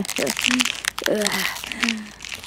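A voice making short hums and little laughs of pleasure, over a continuous crinkling, crunching sound effect that stands for a werewolf transformation.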